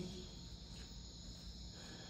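Faint, steady chorus of crickets, an even high-pitched chirring, over a low hum.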